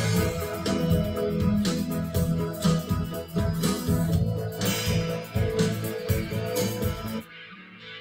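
A guitar-led band recording played back loud through studio monitors during mixing, with regular sharp hits under sustained guitar and bass notes. The playback stops about seven seconds in.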